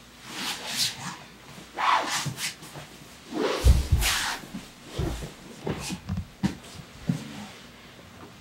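Grapplers moving on foam mats: gi fabric rustling and bodies shifting and scuffing, with a dull thump about three and a half seconds in and several softer knocks after it.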